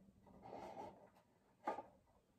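Faint rustling and scraping of wooden craft sticks against the inside of a metal tin as a hand rummages among them, with one short, sharper sound near the end.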